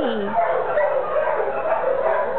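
Dogs barking and whining in a shelter kennel, with a falling whine in the first moment and a steady chorus of short yips and calls after it.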